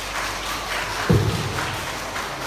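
Audience applause in a large hall, with a single heavy thump about a second in.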